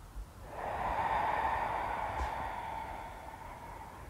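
A long, slow audible out-breath of a qi gong breathing movement. It starts about half a second in and fades away over about three seconds.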